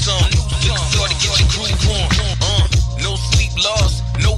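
Hip hop track: rapped vocals over a deep, steady bass line and drum beat.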